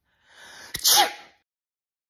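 A single human sneeze: a short breathy intake, then a sharp explosive burst and a brief voiced 'choo' that falls in pitch.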